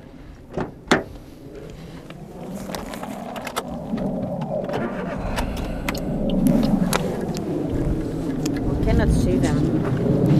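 Toyota Aygo's 1.0-litre three-cylinder engine: a low running rumble comes in abruptly about five seconds in and grows louder, after two short clicks in the first second.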